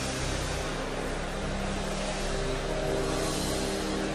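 A large congregation praying aloud all at once, heard as a steady, diffuse murmur of many voices with no single voice standing out, and faint held tones underneath.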